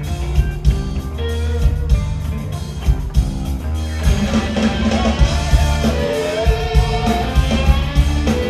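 Live rock trio playing: distorted electric guitar, bass guitar and drum kit, with steady drum strokes. The sound grows fuller about halfway through.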